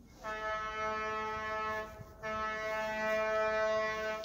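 Horn of a narrow-gauge East Broad Top rail motor car sounding two long, steady blasts with a short gap between them, the opening of a grade-crossing signal.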